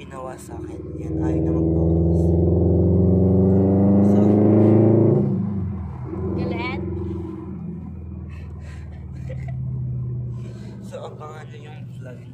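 Car engine heard inside the cabin, pulling up through the revs for a few seconds and then dropping off suddenly, as in a gear change or lifting off the throttle. A brief rising voice sound follows, then a quieter engine hum.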